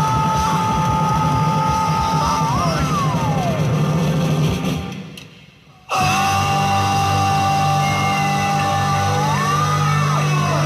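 Rock music from a cover recording: a long held lead note that bends and then slides downward. The music fades nearly out about five seconds in, then cuts back in suddenly with another long held note that rises near the end.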